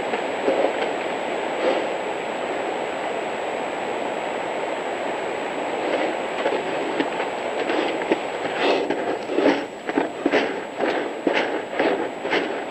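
Camera-trap recording: a steady rushing noise, then from about six seconds in a run of short noises, roughly two a second and getting louder, made by a snow leopard coming right up to the camera.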